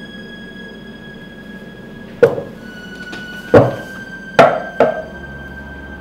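Dramatic background score with sustained held tones, broken by four sharp percussive hits that ring out briefly: one about two seconds in, another a second and a half later, then two close together near the end.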